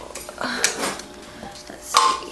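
Handling noises: a burst of rustling and clicking about half a second in, then a sharp click near the end.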